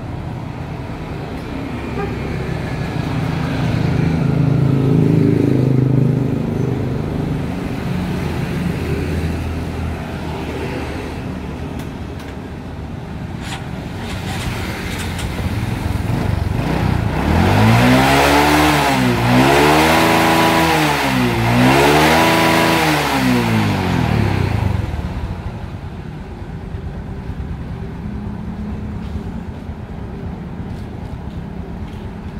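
Honda Supra X motorcycle's single-cylinder four-stroke engine revved three times in quick succession, pitch rising and falling with each twist of the throttle, about seventeen seconds in. A rumble of road traffic swells and fades near the start.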